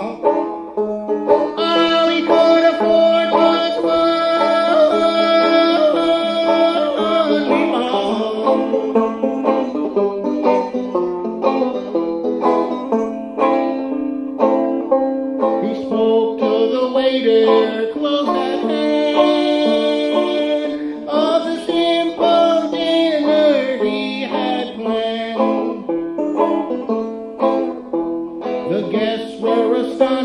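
Banjo playing an instrumental break in an old-time tune, its picked notes joined at times by long held tones.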